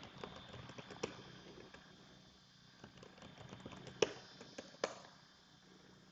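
Computer keyboard keys being typed: scattered, faint key clicks, the sharpest about four seconds in.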